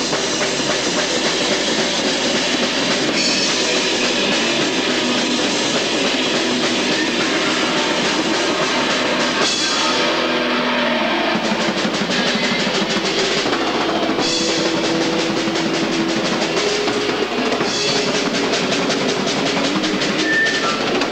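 A live heavy metal band playing loud and nonstop, with fast, driving drumming and cymbals over the band.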